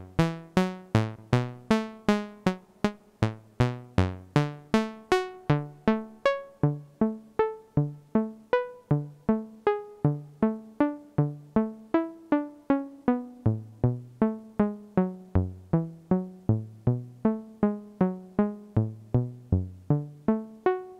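ARP 2600 semi-modular synthesizer playing a repeating sequence of short, plucked notes at about three a second, the pitch shifting from note to note. About six seconds in, the filter is closed down and the bright top of the tone drops away, leaving a duller sound.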